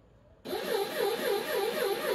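Small DC motor of a homemade linear actuator switching on about half a second in and running with a whirring whine that wavers up and down about five times a second, turning the threaded rod in reverse.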